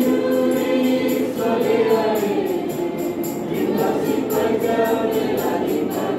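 Youth choir singing a song in the Kewabi language, many voices together, over a steady high percussive beat at about three strokes a second.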